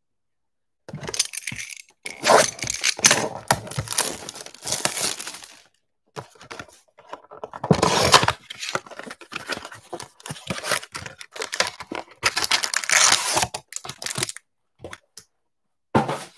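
A cardboard trading-card blaster box being cut and torn open by hand, its wrapping and cardboard tearing and crinkling in two long spells, with a few small clicks near the end.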